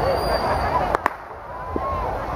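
People talking over wind rumble on the microphone, with two sharp cracks close together about a second in.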